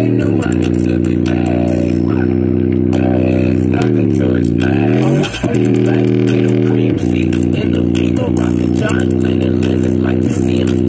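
JBL Flip 4 portable speaker playing a hip-hop song in its low-frequency mode, dominated by deep, sustained bass notes. About four seconds in, the bass slides down and back up, then cuts out briefly.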